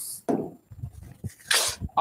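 A man's breath and mouth sounds close to the microphone: a short voiced sound near the start, then a sharp breathy burst about one and a half seconds in.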